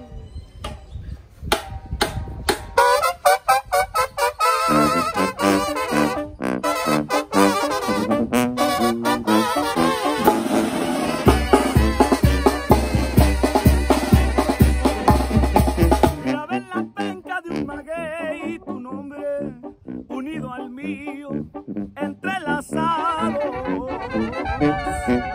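Mexican banda playing live: brass, tuba, snare and bass drum with cymbal, and acoustic guitar, in the instrumental introduction of a ranchera song. Sharp drum strokes open it, the drums and low brass pound heavily through the middle, and the band drops back softer near the end.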